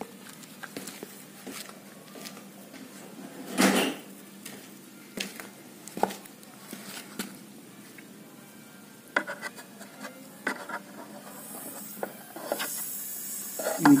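Scattered light knocks and clicks of handling, with one louder knock about four seconds in and a high hiss coming up near the end.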